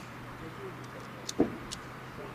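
A single sharp bang about one and a half seconds in, over a steady low hum, with a couple of faint high clicks just before and after it.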